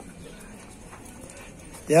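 Quiet, steady outdoor street background with no distinct sound events. A man's voice begins just at the end.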